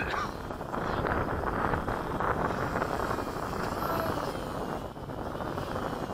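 Wind buffeting the microphone in a steady rush, with the faint whine of a remote-control aircraft's motors and propellers gliding up and down in pitch near the middle.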